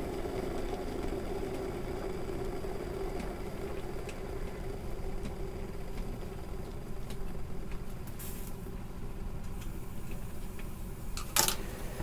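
Food being stir-fried in a frying pan on a gas stove, stirred with chopsticks over a steady low background hum. There is a brief hiss about eight seconds in, and a sharp knock a little before the end as a bowl is moved on the counter.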